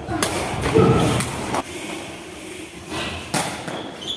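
Sepak takraw ball kicked back and forth by players' feet: a few sharp thuds, echoing in a large sports hall.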